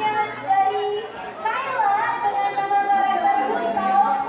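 Crowd voices in a large hall, led by high children's voices calling out, one of them held for over a second.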